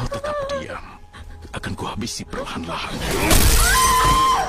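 A person's voice making short wordless sounds, then a run of sharp knocks and bangs, ending in a loud crash about three seconds in, the loudest moment, with a film score underneath.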